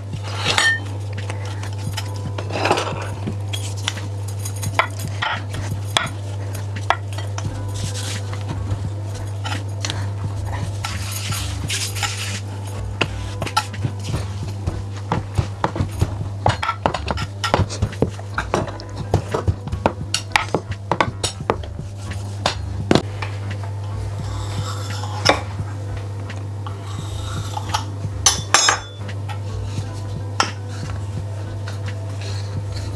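A marble rolling pin rolling and knocking on a marble pastry board as dough is rolled out: irregular stone-on-stone clicks and clacks.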